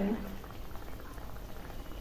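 Corn vada deep-frying in hot oil, with steady sizzling and bubbling.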